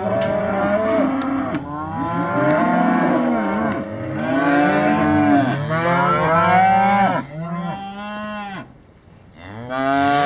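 A herd of heifers mooing, many long calls overlapping one another, with a brief lull about nine seconds in before the calling starts again.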